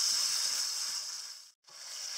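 Strips of marinated beef sizzling in hot oil in a wok as they are stir-fried with a wooden spatula. The sizzle fades and cuts out briefly about one and a half seconds in, then comes back.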